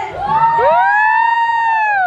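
Two high voices letting out long, overlapping whooping cries that glide up, hold, and slide down near the end.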